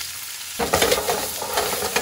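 Shrimp, sliced garlic and chili frying in olive oil in a skillet, sizzling; about half a second in the sizzle grows much louder as the pan is shaken and the food tossed in the hot oil.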